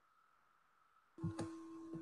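Dead silence, then a little over a second in, a video-call microphone opens with a steady electrical hum and a couple of short knocks.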